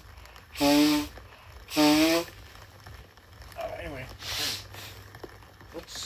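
A man coughing in a fit: two loud, hoarse coughs about a second apart, then quieter throaty sounds and a softer cough about four and a half seconds in.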